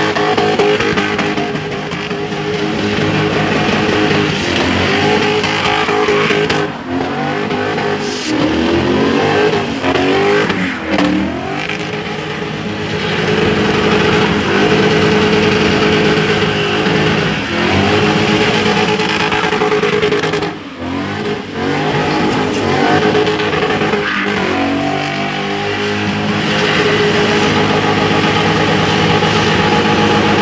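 BMW E38 7 Series engine held at high revs through continuous donuts, the revs swinging up and down as the rear tyres spin and smoke on the tarmac. The throttle comes off briefly twice, about a quarter and two-thirds of the way through.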